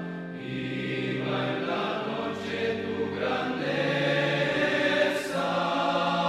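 A choir singing a slow sacred hymn as the communion chant. The voices hold long notes that move to a new chord about every second.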